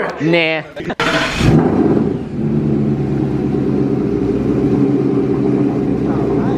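Ford Mustang engine starting about one and a half seconds in with a brief loud burst, then settling into a steady idle.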